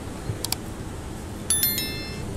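Subscribe-button animation sound effect: a quick double mouse click about half a second in, then a bright, ringing bell-like notification ding about a second and a half in, over a faint hiss.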